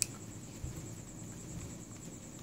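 A single sharp click as a screwdriver touches a Honda Tiger carburetor body, then faint handling noise with a soft low bump under a second in.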